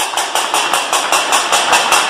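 A metal plate (thali) beaten rapidly and evenly, about eight sharp metallic strikes a second, each with a short ring, echoing in a large hall.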